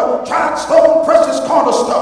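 A man's voice preaching in loud, high-pitched shouts into a handheld microphone, in short strained phrases about half a second each, too strained for the words to come through.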